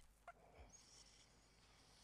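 Near silence: faint room tone in a pause of the lecture, with a couple of tiny brief sounds in the first second.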